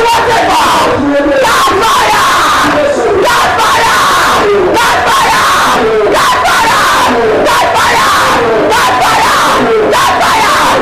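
A preacher praying aloud without a break in a loud, impassioned voice through a microphone, with a congregation praying aloud together beneath him.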